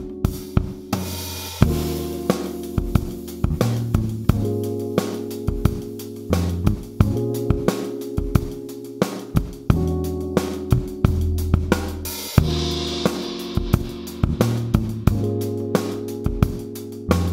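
Acoustic drum kit played live, with kick, snare, hi-hat and Murat Diril cymbals, over sustained sampled chords from an Akai sampler. There is a cymbal crash about three-quarters of the way through.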